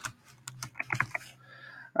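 Computer keyboard keystrokes: a few separate key clicks, then a quick run of several clicks about a second in.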